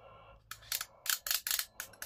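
Small metal parts of a Brother punchcard knitting machine's card reader clicking as its selector pins are wobbled over by hand, the springs that would normally move them being absent: a quick run of irregular, sharp clicks.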